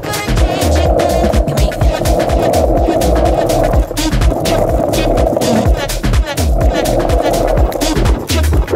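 Skateboard wheels rolling over rough asphalt, a steady rolling roar that eases off briefly about four and six seconds in, under electronic music with a steady beat.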